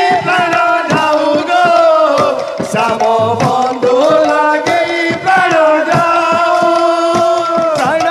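A group of men singing a devotional kirtan chant loudly together, their long held notes gliding between pitches, over steady strokes of barrel drums and hand-held percussion.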